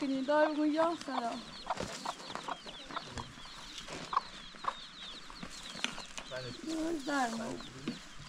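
Chickens clucking, with a run of rapid high chirps through the middle and a lower bending call near the start and again near the end.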